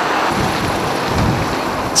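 Steady rushing outdoor noise of wind on the microphone over harbour water, with low rumbling gusts coming and going about halfway through.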